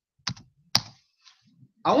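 Laptop keys pressed in two sharp clicks about half a second apart, the first a quick double click.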